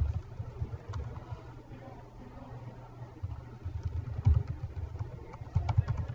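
Computer keyboard being typed on, with scattered faint key clicks, over an uneven low rumble of room and microphone noise that swells in places.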